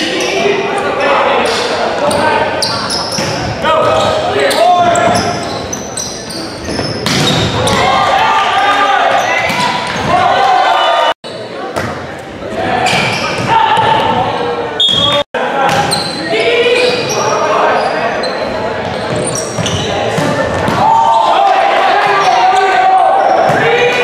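Volleyball being played in a large gym: players and spectators calling out and talking throughout, with the ball being struck and hitting the hardwood floor in sharp knocks that ring through the hall.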